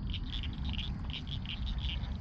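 A frog chorus at the pond: short high-pitched call pulses, about five a second, repeating steadily over a low rumble.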